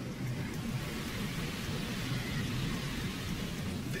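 Storm at sea: a steady rushing noise of wind and breaking waves around a ship's bow, with a low hum beneath.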